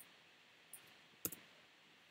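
A few faint clicks from a computer mouse and keyboard against near-silent room hiss. There is a small click at the start, another about three-quarters of a second in, and a quick double click at about a second and a quarter, which is the loudest.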